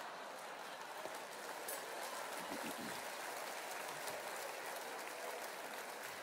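Theatre audience laughing and applauding, a steady clatter of clapping that dips slightly near the end.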